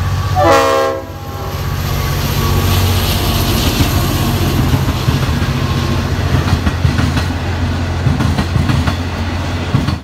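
A diesel locomotive sounds its multi-tone horn in one short blast about half a second in. Then the locomotive's engine drones steadily as it hauls passenger carriages past, their wheels clicking over the rail joints more and more in the last few seconds.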